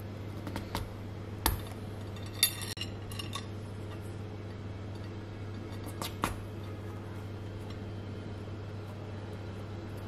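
A few sharp clicks and clinks as thin wooden skewers are handled and pushed into a steamed cauliflower on a ceramic plate, the loudest a short ringing clink about two and a half seconds in. A steady low hum runs underneath.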